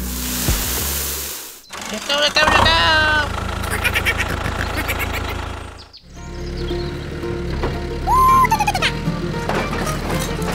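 Sand pouring into a plastic toy trailer over a low motor hum. After a cut about two seconds in, music plays with warbling voice-like and whistle-like sound effects, one of them a rising and falling whistle near the end.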